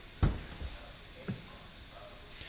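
A single short thump about a quarter second in, then a fainter tap about a second later, over quiet room tone.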